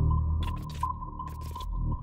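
Dark ambient intro music: a deep drone with a steady high tone held above it, and a few short crackles about a third of the way in and again past the middle.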